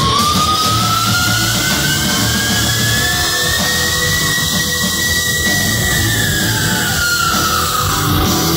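Heavy metal band playing live, loud and steady: electric guitars, bass and drums, with one long high note that slowly rises over several seconds and then falls back near the end.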